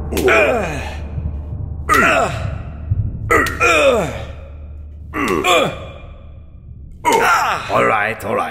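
A man crying out in pain again and again, about five cries, each sliding down in pitch, with a steady low hum underneath that stops near the end.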